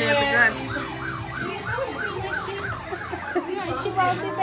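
A siren-like wail: a high tone sweeping up and down quickly, about three times a second, over a few seconds.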